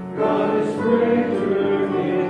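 A church congregation singing a hymn together. There is a short break between lines just at the start, then the singing carries on.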